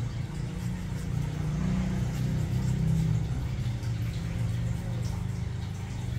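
A steady low motor-like rumble, a little stronger in the middle, with a few faint clicks.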